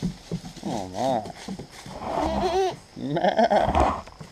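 Nanny goats bleating: three bleats with a wavering pitch, the last one the loudest.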